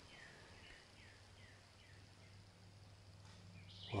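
Near silence: a faint steady low hum, with a few faint, short falling chirps in the first second and a half.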